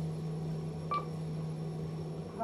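Kone EcoDisc lift car arriving at the ground floor: a steady low hum from the lift, with one short electronic beep about a second in.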